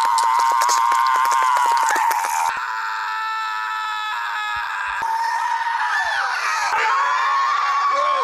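Three long, held screams from cartoon characters, one after another, each on a nearly steady high pitch. The first has a rapid stutter running through it. Each breaks off abruptly where the next begins, about two and a half seconds and five seconds in.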